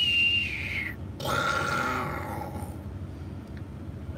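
A man's short whistle on one pitch that sags and stops about a second in. After a brief gap comes a drawn-out closed-mouth hum or grunt from his voice, over a low rumble from the parked vehicle.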